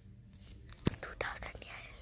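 Faint whispering from a child close to a phone microphone, with a single sharp click of the phone being handled a little under a second in.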